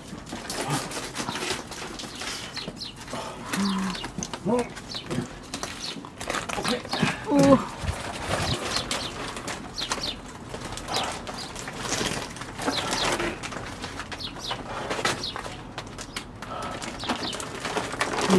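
Rustling, scraping and knocking as a heavy potted cactus, wrapped in a woven plastic shopping bag, is manhandled through a doorway, with a few brief grunts and exclamations.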